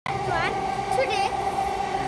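A young boy's voice, two short high-pitched vocal sounds without clear words, over a steady background hum.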